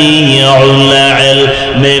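A man's voice chanting an Urdu verse in a slow, melodic style, holding long drawn-out notes that slide from one pitch to another, with a new word beginning near the end.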